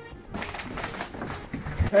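Rustling and quick irregular knocks from a handheld camera carried at a run, with hurried footsteps. A shout of "hey" comes near the end.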